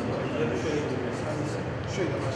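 A man talking over a steady, dense hiss.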